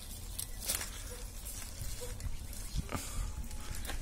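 Green onions being pulled out of a planting hole in a PVC hydroponic pipe: a few short scrapes and rustles of leaves, bulbs and roots dragging free, over a steady low hum.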